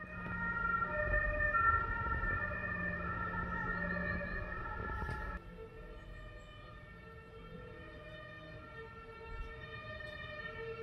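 Fire engine siren sounding in the street, louder for the first five seconds and then fainter as it carries on.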